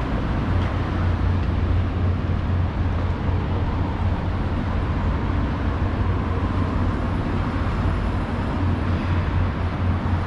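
Steady road traffic noise from cars on a wide city avenue, a continuous low rumble with no distinct events.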